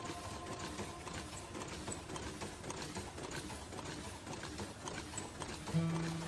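Paper cup forming machine running, a fast, continuous mechanical clatter of many small ticks and knocks.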